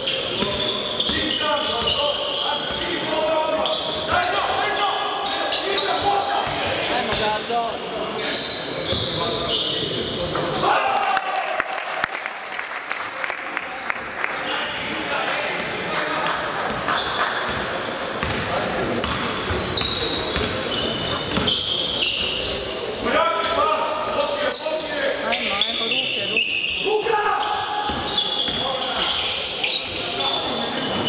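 Live basketball play on a wooden court: the ball bouncing repeatedly amid players' shouts, echoing in a large sports hall.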